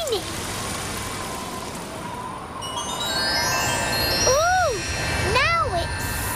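Cartoon aeroplane sound: a steady hiss and low rumble of the plane in flight. From about halfway a run of sustained chime-like musical notes comes in, and near the end there are two short rising-and-falling vocal exclamations.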